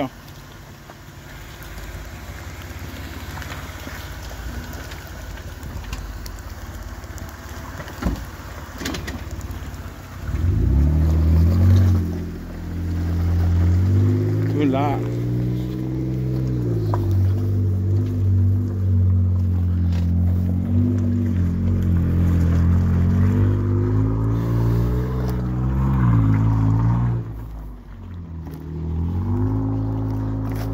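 A Jeep's engine crawling over rock, at first faint under a steady background with a couple of knocks. About a third of the way in it revs up loudly and keeps working under load, its pitch rising and falling as the throttle is fed and eased.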